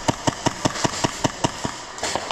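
Airsoft gun firing a rapid, even string of about ten shots, about five a second, that stops shortly before the end.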